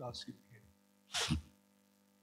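A man's voice trails off at the start, then, a little over a second in, comes one short, sharp breath noise from him.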